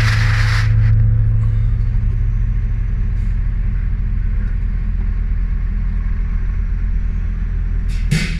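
Freight lorry's diesel engine idling, a steady low drone heard from inside the cab.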